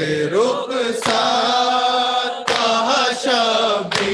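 A group of men chanting a noha, an Urdu lament, in unison into a microphone, in long held melodic lines. A sharp slap falls roughly every second and a half, in time with the chant: matam, hands striking chests.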